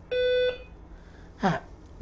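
A single short electronic beep, a steady buzzy tone lasting about half a second. A brief voice sound follows about a second later.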